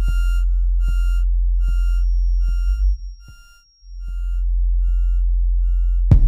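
Live-coded electronic music: a deep, sustained sine-wave bass note that cuts out about halfway through and swells back in, under short square-wave synth blips that pulse about every 0.8 s and fade away like echoes, each with a soft click. A thin high tone enters about a third of the way in.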